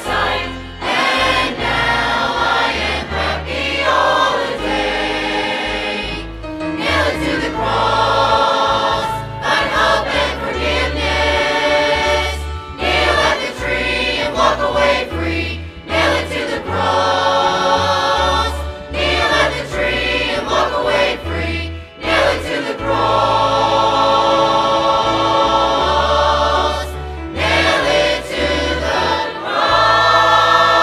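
Large mixed church choir singing a gospel song with instrumental accompaniment and a steady bass line, pausing briefly between phrases.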